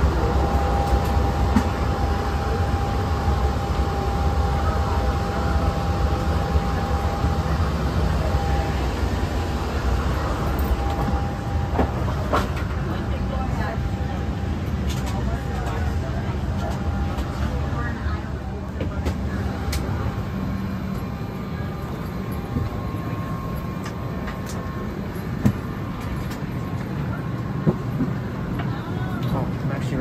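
Steady low rumble and hiss of airliner boarding noise in the jet bridge and aircraft doorway, with a thin steady whine for roughly the first twelve seconds and a few light clicks and knocks along the way.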